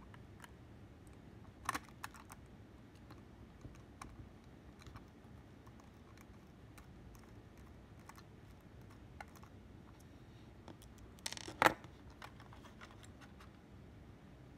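Small Phillips screwdriver turning screws out of a model locomotive's plastic shell: faint scattered clicks and scrapes, with a sharper click a couple of seconds in and a louder clatter about eleven and a half seconds in.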